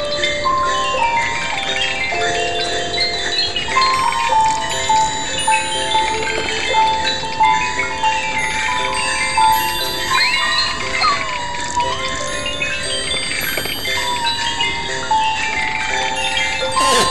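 Lo-fi electronic sound collage of overlapping looped Christmas melodies in chiming, bell-like tones, layered from a mixing program and a circuit-bent Christmas toy. A tone bends and slides in pitch about ten to twelve seconds in.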